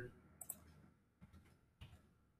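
Faint clicks of a computer mouse and keyboard as text is edited, over near silence: two quick clicks about half a second in, a few weaker ticks, and another click near the end.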